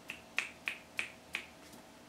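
Finger snapping in a steady beat: five crisp snaps about three a second, stopping about a second and a half in.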